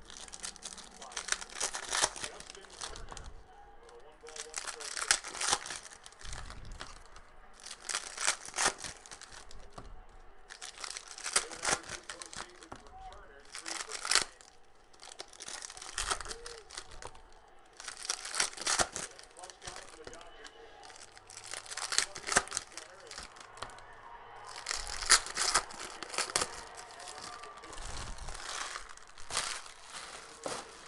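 Foil wrappers of 2018 Panini Prizm football card packs being torn open and crinkled by hand, one pack after another. There is a burst of tearing and crinkling about every three seconds.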